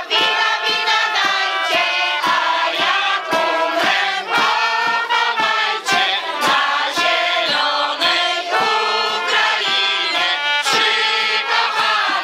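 Folk ensembles singing a song together as one large choir, mostly women's voices, in short, evenly paced sung notes.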